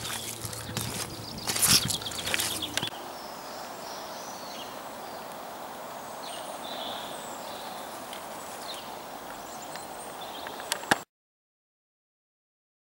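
Outdoor farmyard ambience: a few sharp knocks and scuffs in the first three seconds, then a steady background hiss with faint high chirps, which cuts off suddenly about eleven seconds in.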